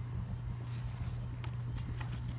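Paper rustle of a hardcover picture book's page being turned, a short rustle about a second in followed by a few light clicks, over a steady low rumble.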